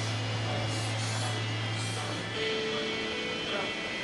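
Room noise in a gym: a steady low hum that stops a little after two seconds in, followed by a brief higher tone, under faint indistinct voices.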